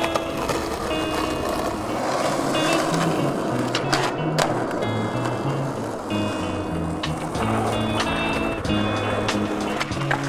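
Skateboard wheels rolling on concrete, with a few sharp clacks of the board about four seconds in and several more near the end. Backing music with a stepping bass line plays under it throughout.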